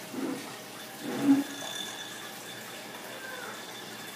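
Water swirling in a glass beaker on a Stir-Plate 3000 magnetic stirrer as its speed is turned up, with a faint high steady whine. A short low sound stands out about a second in.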